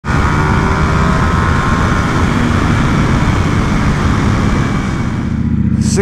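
Sport motorcycle cruising at highway speed: the engine runs steadily under a heavy rush of wind noise on the microphone. The sound eases a little near the end.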